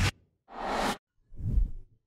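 Whoosh sound effects for an animated title: two swooshes, each swelling up and cutting off sharply, about a second apart, after the cut-off tail of another right at the start.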